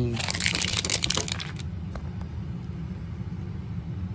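Thin plastic shrink wrap crinkling as hands peel and tear it off a plastic toy capsule sphere. The crinkling is dense for about a second and a half and then dies down to a couple of small clicks, over a steady low hum.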